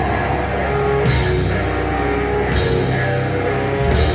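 Death metal band playing live: distorted electric guitar and bass guitar over a drum kit, loud and continuous.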